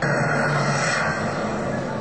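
Soft-tip electronic dartboard's 'low ton' award sound effect, for a three-dart score of 100 or more: a loud, steady rushing sound with a low hum under it that starts suddenly and holds.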